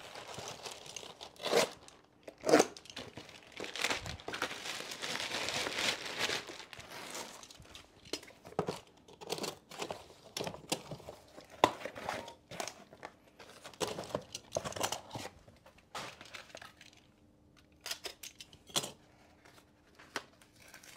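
Plastic courier mailer bag being torn open and crinkled, heard as irregular rustles and short rips with a longer stretch of tearing a few seconds in.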